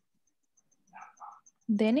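Faint, rapid high-pitched chirping, about seven chirps a second, from a small calling animal picked up on an open microphone. A voice cuts in near the end.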